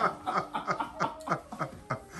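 A man chuckling: a run of short laughs, about four a second, each falling in pitch.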